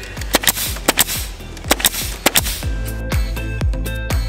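Pneumatic nailer firing a quick, uneven series of sharp shots into the wooden boards of a barn door, the shots stopping about two-thirds of the way through. Background music plays throughout.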